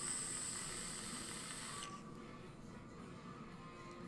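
Airflow hiss of a sub-ohm coil firing on a Neptune V2 hybrid mechanical vape mod during a long draw, with a thin steady high whistle over it. It stops abruptly about two seconds in, and a softer breathy hiss follows as the vapour is exhaled.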